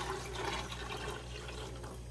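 Water pouring in a stream from a plastic display case into a clear plastic jar, splashing into the water already inside, fading slightly toward the end.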